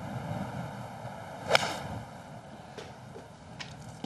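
A golf iron striking the ball out of dry, crunchy rough: one sharp, crisp strike about one and a half seconds in, over a steady outdoor background.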